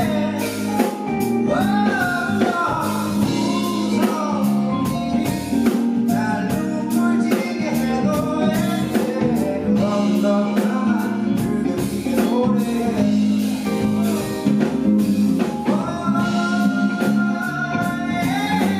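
A male singer singing live into a microphone over a band, with guitar, bass and a steady drum-kit beat.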